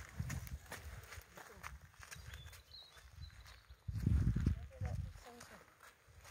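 A horse's hooves and a person's boots crunching on gravel as they walk, with low rumbles, loudest about four seconds in.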